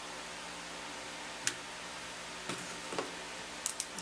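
A few light clicks and taps of hands handling a clay-covered foam-and-wire sculpture armature: one sharp click about a second and a half in, a couple more near the end, over a steady electrical hum.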